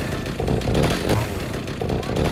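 Chainsaw engine running and being revved in repeated surges, a few per second.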